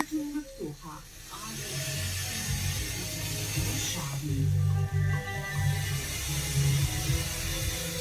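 FM radio broadcast playing through a hi-fi receiver tuned to 87.6 MHz, a weak long-distance signal. A voice is heard briefly at the start, then a rush of hiss swells, and from about four seconds in music with a steady bass comes through.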